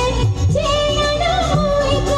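Women singing a song into microphones, a held, wavering melody, over a live electronic keyboard backing, all amplified through a PA.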